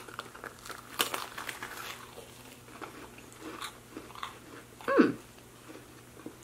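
Two people biting into s'mores and chewing, the graham crackers crunching in crisp little snaps, mostly one to two seconds in. About five seconds in comes one short falling hum from one of them.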